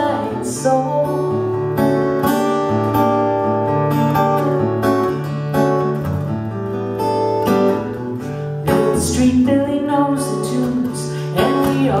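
Steel-string acoustic guitar playing an instrumental break in a bossa nova song: plucked melody notes over a moving bass line. The voice comes back in right at the end.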